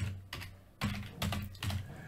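Computer keyboard typing: a quick run of keystrokes as a word is typed.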